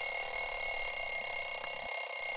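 Smartphone wake-up alarm going off: a loud, steady, high-pitched electronic ring that holds without a break.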